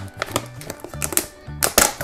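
Clicks and crackles of a clear plastic clamshell toy box being pressed and pried at by fingers, the sharpest pair near the end, over background music with a steady low beat.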